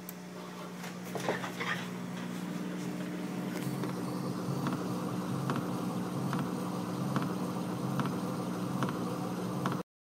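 A 40-watt Full Spectrum Engineering CO2 laser cutter raster engraving over a steady machine hum. The laser head's motors drive it back and forth in a regular shuttling pattern, with a faint tick about every second as it reverses. The sound cuts off suddenly just before the end.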